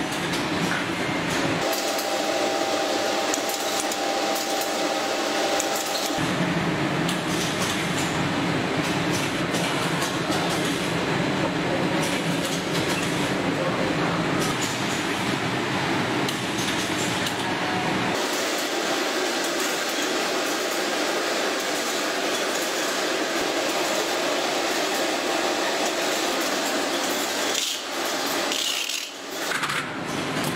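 Steady running noise of packaging-line machinery, with no distinct strokes or rhythm, its character changing abruptly about two, six and eighteen seconds in.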